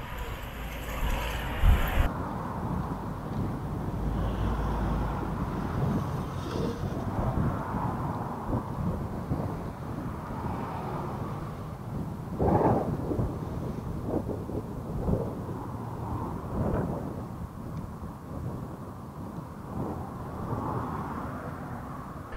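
Muffled outdoor ambience through an action camera's built-in microphone: a low rumble with wind on the microphone and scattered thumps, the loudest about twelve seconds in. The sound turns duller about two seconds in.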